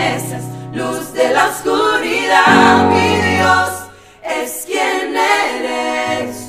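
Group of women singing a Christian worship song together, held and wordless phrases over sustained low bass notes, with a brief dip about four seconds in.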